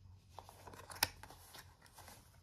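Faint handling of a small cardboard toy box, rubbing and scraping, with one sharp click about a second in.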